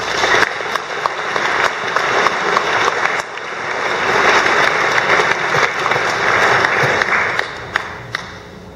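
Audience applauding: many hands clapping at once, dipping briefly about three seconds in, building again, then dying away near the end.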